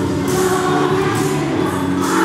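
A group of young children singing a Spanish Christmas carol (villancico) together, with small hand tambourines jingling along.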